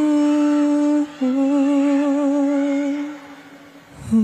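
A male singer's live vocal holding a long steady note, then after a brief breath a second, slightly lower note with vibrato that fades out near the end, over soft sustained accompaniment.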